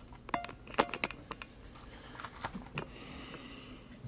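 Light clicks and taps of a small plastic RC crawler truck being picked up, handled and set down on a workbench: a few sharp clicks in the first second, then scattered softer ticks.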